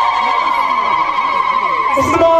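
A high voice holding one long, wavering sung note into a microphone, which stops near the end.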